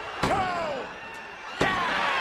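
Wrestling count sound effect: two hard slams on a ring mat, a little over a second apart, each followed by a crowd shouting along, over steady crowd noise.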